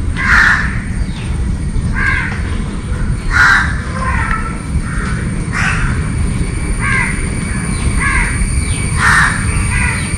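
Birds calling repeatedly with short, harsh calls, about ten in all, one every second or so, over a steady low rumble.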